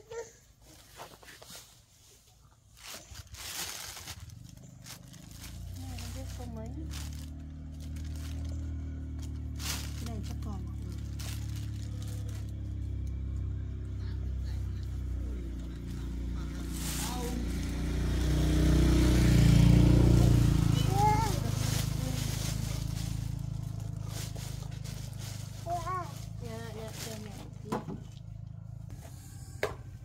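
Low engine rumble of a passing vehicle that builds up, is loudest about two-thirds of the way through, then fades. Over it come rustling and crinkling of plastic bags and clothes being handled.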